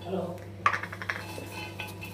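Raw peanuts clicking against a hot griddle as they are spread out by hand for dry-roasting: a few sharp, separate clicks.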